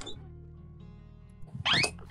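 Background music with steady low sustained notes, and a short, loud sound near the end whose pitch sweeps upward.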